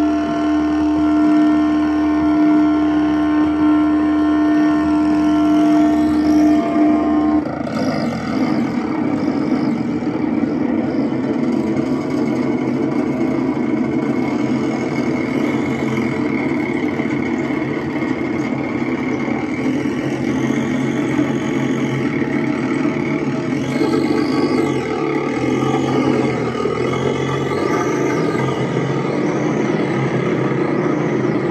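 Live experimental electronic noise played on effects pedals through a small amplifier: a held drone of several steady tones that switches after about seven seconds to a dense, rumbling noise wash, with high sweeps rising and falling near the end.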